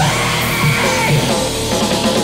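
Heavy metal band playing loud: distorted electric guitars, bass and drums.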